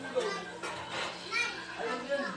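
Children's voices talking and calling out in quick, overlapping bursts, over a steady low hum.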